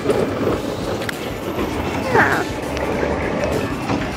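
Amusement-park roller coaster train running along its track: a steady, loud rumble, with a brief voice about two seconds in.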